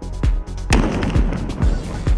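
A Carbon Fire 10 disruptor firing once, a sharp blast about three-quarters of a second in with a short noisy tail, over electronic dance music with a steady beat.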